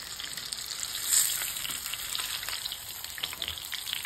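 Breaded fish fillet frying in shallow hot oil in a pan: a steady sizzle with many small crackles, swelling louder about a second in, as the fillet is being turned over with tongs.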